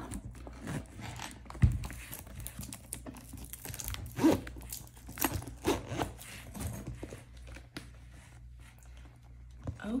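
A zippered hard-shell nail-kit case being handled and unzipped, with rustling and scattered small clicks and a sharp knock about two seconds in.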